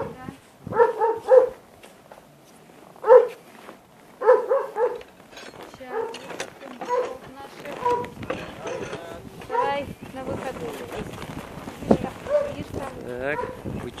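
A farm guard dog barking in short bouts: a quick run of barks about a second in, a single bark around three seconds, and another run around four to five seconds, with scattered quieter sounds after.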